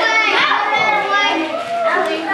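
Many young children chattering at once, their voices overlapping in a continuous babble.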